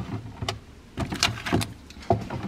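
A clear plastic refrigerator drawer bin being pulled out and rummaged through, giving a few sharp plastic knocks and clatters.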